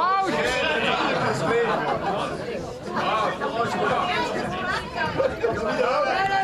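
Chatter: several people talking over one another at once, with no music playing.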